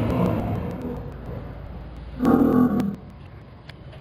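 A man's voice speaking in short phrases with pauses.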